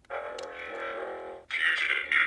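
A talking Sentinel action figure's built-in sound chip playing: a steady synthesized electronic tone for about a second and a half, then a choppy, robotic-sounding voice.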